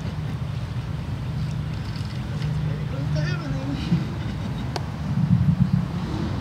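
Low rumble of wind on an outdoor microphone, with muffled, indistinct talk and one sharp click near the end.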